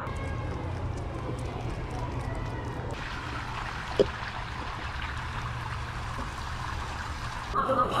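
Steady low rumble and hiss of outdoor background noise, with one sharp click about four seconds in; a voice starts just before the end.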